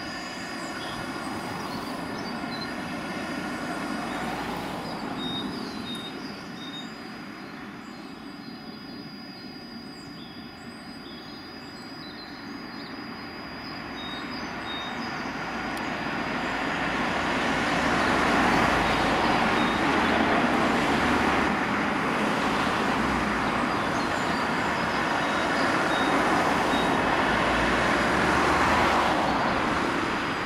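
A thin, steady high-pitched whistle tone, with a slightly lower tone beeping on and off in short dashes: a high-pitched oscillating whistle from an unidentified source. From about halfway through, a broad rush of passing traffic swells up and becomes the loudest sound.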